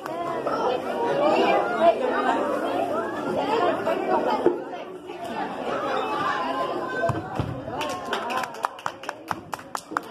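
Many children and adults talking and calling out at once in a large hall, with no single voice standing out. Near the end comes a quick run of sharp taps, several a second.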